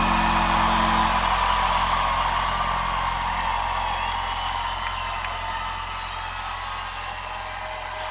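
A live rock band's sustained chord ringing out and slowly fading, a low bass drone held underneath, while the crowd cheers and whoops.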